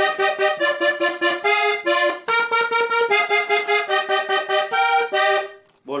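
Three-row diatonic button accordion played on its right-hand treble buttons: a short vallenato melody phrase in a question-and-answer pattern. Each note is struck several times in quick succession before the next, and the playing stops shortly before the end.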